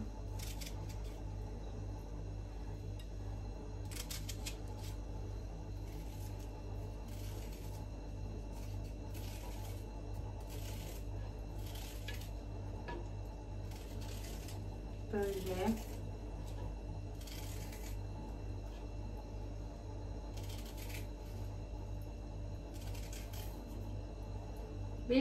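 Knife cutting through an onion held in the hand, pieces dropping onto the food in an earthenware pot: short, crisp scraping cuts about once a second, over a steady low hum.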